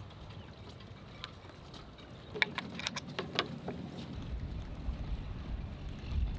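Small metallic clicks and clinks from handling a stainless-steel antenna mount and an Allen key, a cluster of them about halfway through. Under them runs a steady low rumble of wind and water around a boat.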